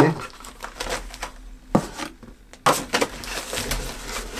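Paper and a plastic sleeve rustling and crinkling as they are handled and pulled from a cardboard box, with a sharp tap about halfway through and busier rustling in the second half.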